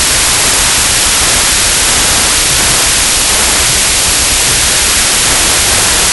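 Hydrogen-oxygen (HHO) torch flame hissing steadily as it engraves concrete: a loud, even, high-pitched hiss with no breaks.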